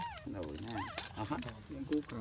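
Baby monkey giving thin, high-pitched squeaky calls: one falling in pitch at the start and one that rises and falls about a second in.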